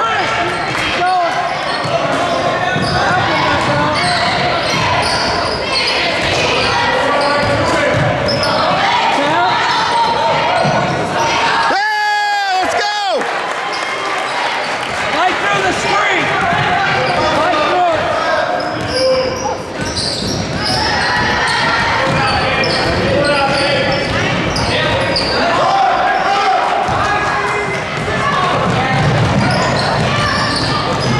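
Basketball being dribbled on a hardwood gym floor while players run, under continuous spectator chatter and calls echoing in the hall. About twelve seconds in, a single loud held tone with a wavering pitch stands out for about a second.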